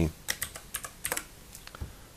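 Computer keyboard typing: a quick run of sharp key clicks over about a second and a half as a short code is typed.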